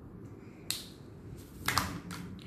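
Sharp plastic clicks from eyeliner pens being capped and handled: one click, then about a second later a quick double click.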